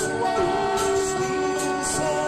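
Live folk-rock band with banjo and electric and acoustic guitars playing a sustained chord of steady held notes. It is loud and harsh, recorded right next to the PA speaker.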